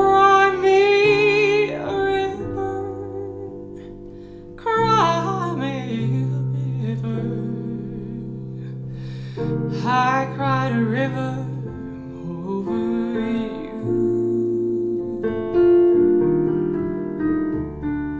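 A woman singing a slow jazz ballad with breath support, her held notes wavering with vibrato, while accompanying herself with sustained chords on a digital piano. Three sung phrases are separated by stretches of piano alone.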